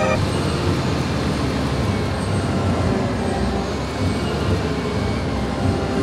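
Steady, low engine rumble under a broad hiss, typical of airport ground equipment running around a parked airliner.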